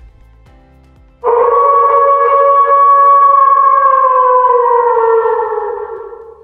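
A single long wolf howl that starts suddenly about a second in, holds one pitch for several seconds, then slides down as it fades near the end. Faint background music runs beneath it.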